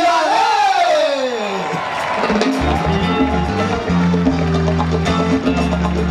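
A man's long drawn-out "ay" sliding down in pitch, then about two and a half seconds in a live salsa orchestra strikes up, with bass and piano carrying a steady rhythm.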